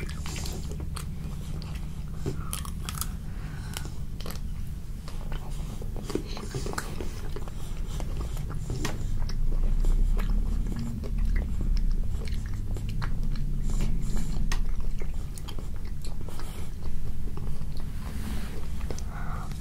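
Close-miked chewing of a crunchy chocolate-and-almond-coated ice cream bar, with many small sharp crackles of the crisp coating breaking up. A low rumble runs beneath and grows louder partway through.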